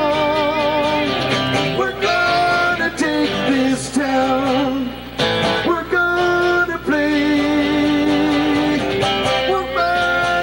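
Live band music: two acoustic guitars and an electric guitar playing a song with singing, with wavering sung notes at the start and long held notes through the middle.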